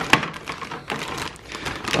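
Clear plastic parts bag crinkling in the hand, a dense run of quick little crackles.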